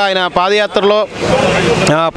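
A man speaking into a handheld microphone, his voice breaking off about halfway through. A swelling rush of street traffic noise from a passing vehicle then fills the rest.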